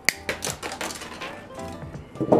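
Background music, with a sharp metallic click just after the start and a few lighter clicks and taps after it. The clicks come from a small metal hand tool and a thin wire being worked at a terracotta pot.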